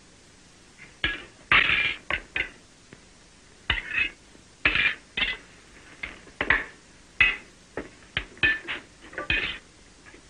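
Metal spoons clinking and scraping against tin plates in a string of short, irregular strokes as people eat.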